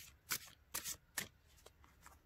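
Several short, scratchy rustles of cloth, a fleece blanket or clothing shifting close to the microphone, fading out in the second half.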